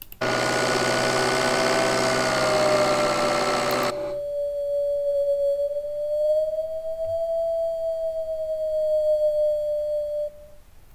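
Playback of a recorded turbocharger sound: for about four seconds the full recording, a broad rushing noise with a whine over it. Then the low whine component alone, isolated from the rest, as a single clean whistling tone that dips and rises slightly in pitch. That whine is what makes the turbo's sound unacceptable.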